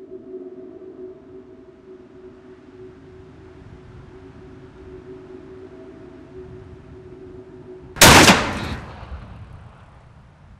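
A steady low musical drone of held tones, cut off about eight seconds in by one loud shotgun blast that trails off over about a second.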